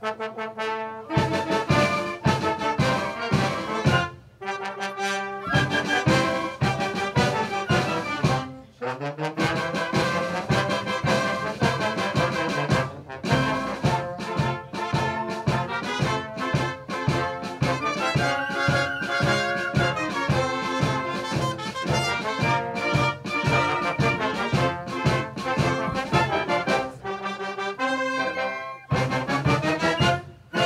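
A wind band of flutes, saxophones and brass playing a piece over a steady beat, with brief breaks in the music about four and nine seconds in.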